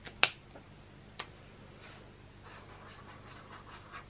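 Plastic cap of a Zebra Mildliner marker clicking sharply, with a second fainter click about a second later, then a marker tip faintly scratching across sketchbook paper near the end.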